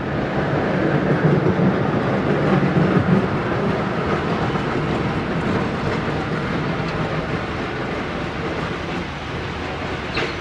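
Electric freight tram running along the tramway track, a steady rumble of wheels and running gear, loudest in the first few seconds and then easing a little.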